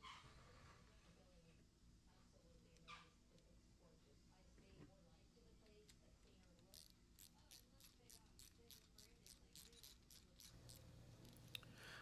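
Near silence with light handling of metal parts. From about halfway in comes a run of faint, quick clicks, about three a second, as a small hand tool snugs a bolt that fixes a bracket to an aluminium mesh grill guard.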